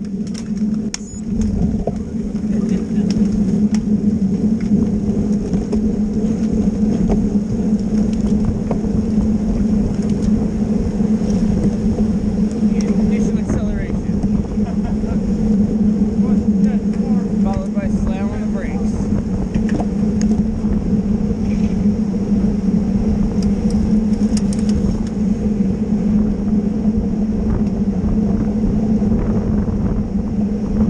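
Steady wind rush and road rumble on a camera mounted on a moving road bike, with a constant low hum, as the rider rolls along in a pack of racing cyclists.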